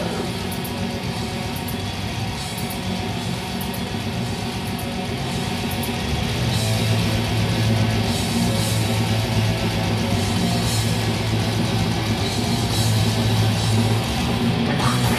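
Black metal band playing live, recorded from the audience: distorted electric guitars and drums. It grows louder and heavier in the low end about six seconds in.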